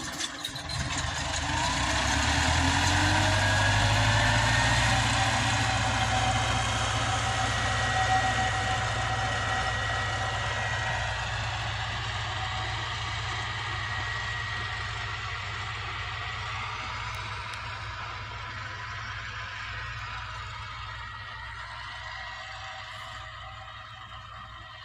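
A vehicle engine speeds up, rising in pitch over the first few seconds, then runs steadily and slowly fades away.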